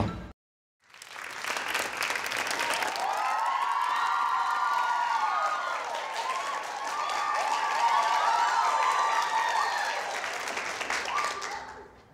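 Studio audience applauding, with cheering voices over the clapping. It starts after a moment of silence about a second in and fades away near the end.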